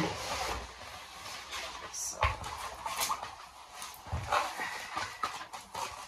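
A large rolled diamond painting canvas and its stiff protective release sheet being unrolled and smoothed by hand: paper-like rustling and crinkling, with a few sharper crackles.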